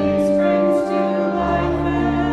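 Church choir singing a hymn with organ accompaniment, moving slowly between long held chords over a deep organ bass.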